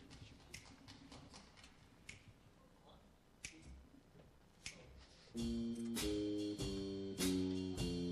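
A slow count-off of sharp clicks, about one every 1.2 seconds, then about five seconds in the jazz band comes in with loud sustained chords, with sharp accents continuing on the same slow beat.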